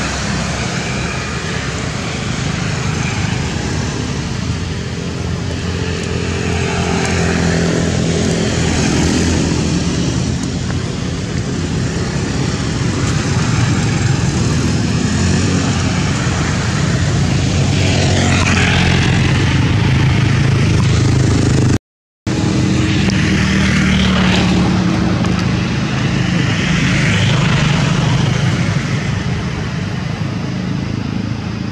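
A motor vehicle engine running steadily nearby: a continuous low hum that swells and eases, with some fainter higher sounds over it in the second half.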